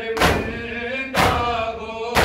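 A crowd of mourners beating their chests in unison (matam), one loud slap about every second, twice here, with voices singing a nauha lament between the strokes.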